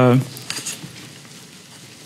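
The tail of a spoken "uh", then quiet room tone with a few faint clicks about half a second in.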